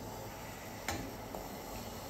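A single light click of the stainless steel pressure cooker lid coming free as it is twisted open and lifted off, otherwise only quiet room tone.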